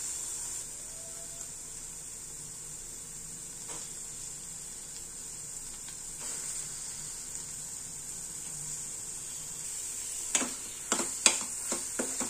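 Spiced masala paste sizzling steadily in a steel pan. In the last two seconds, several sharp clicks and scrapes of a steel spoon against the pan as stirring begins.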